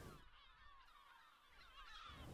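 Near silence, with faint high chirping in the background.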